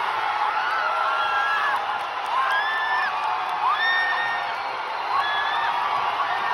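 Large crowd cheering and shouting over a constant roar, with long held whoops rising and holding one pitch, overlapping one after another.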